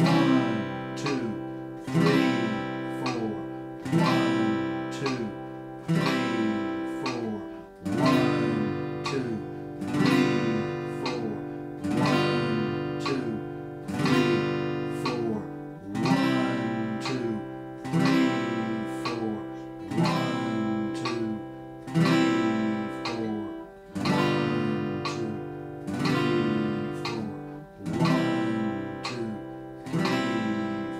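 Steel-string acoustic guitar strummed with single pick down-strokes in half notes at 60 beats per minute: one chord every two seconds, each left to ring. The chord changes about every eight seconds.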